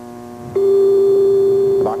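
Game-show electronic tone: one steady, loud beep that starts about half a second in and is held for over a second. It signals that the contestants' answers are locked in.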